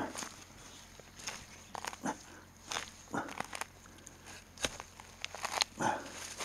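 A spade blade chopping and scraping into hard soil and leaf litter while digging out a bamboo shoot: a series of irregular sharp strikes and crunches.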